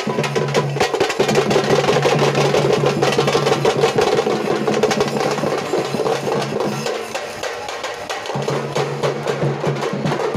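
Drums beaten fast and continuously in a dense, driving rhythm, with a low steady hum underneath that drops out briefly about seven seconds in.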